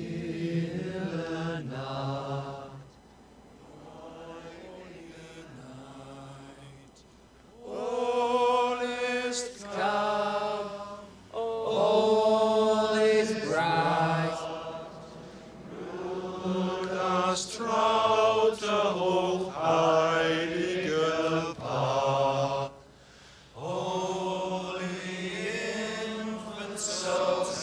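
Men singing a slow, chant-like song in long held notes, phrase by phrase with short breaks between, quieter for a few seconds early on before swelling again.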